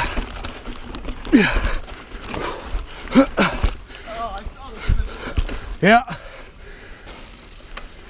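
A mountain biker breathing hard with short voiced grunts and exhales, one falling in pitch about a second and a half in, while pedalling up a rocky climb. Scattered knocks and rattles from the bike going over rocks sound under the breathing, along with a low rumble on the microphone.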